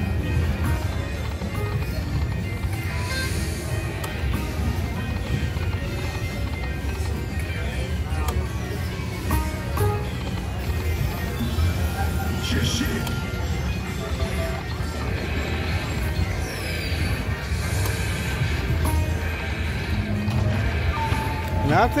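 Casino floor ambience: background music and chatter over a steady low hum, with a Dragon Link slot machine's electronic spin sounds and short chimes. Just before the end comes a rising electronic sweep followed by a held tone.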